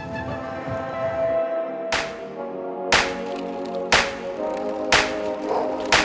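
Background music: sustained tones with a sharp hit about once a second, starting about two seconds in.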